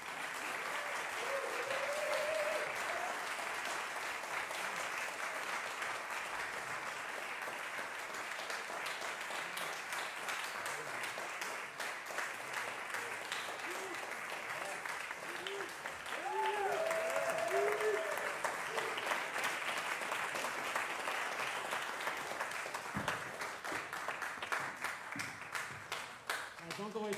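Audience applauding steadily, with a few voices calling out above the clapping near the start and again about two-thirds of the way through.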